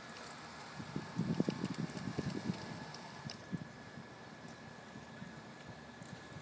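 Wind buffeting the microphone in uneven gusts, strongest about one to two and a half seconds in, over a thin steady high-pitched whine.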